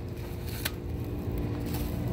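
Handling noise from a large crepe-paper piñata being grabbed and moved, with one sharp click about two-thirds of a second in, over a steady low store hum.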